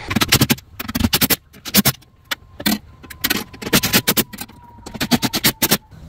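A rapid, irregular run of sharp percussive clicks and pops, like beatboxing, with a faint steady tone underneath.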